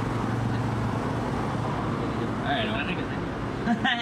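Steady city street traffic noise with a low hum. A voice speaks briefly about two and a half seconds in and again near the end.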